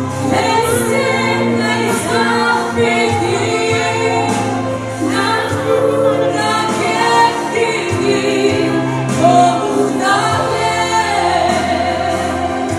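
A woman singing live into a handheld microphone, holding long notes over a steady instrumental accompaniment.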